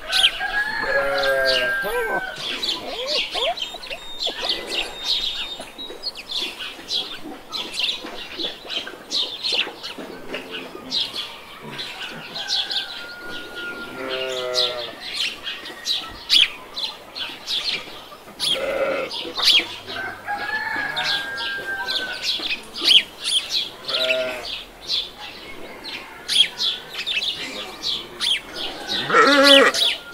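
Chickens calling: several drawn-out squawking calls and short runs of clucks, over steady high-pitched chirping of small birds.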